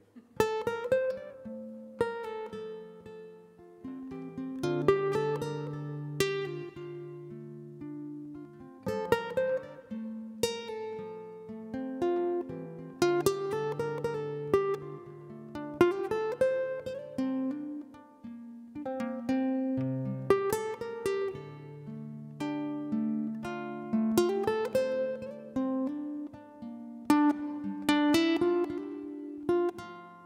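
Solo acoustic guitar playing the instrumental opening of a folk song: fingerpicked notes ringing over bass notes, in a phrase that comes round about every four seconds.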